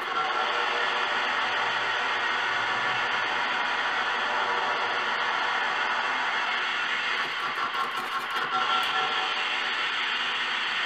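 Noise music from a pterophone, a wing instrument with a contact microphone, worked with scissors. The signal runs through effects plugins into a dense, steady wash of noise with faint ringing tones, and sharper crackles break in up high around eight seconds in.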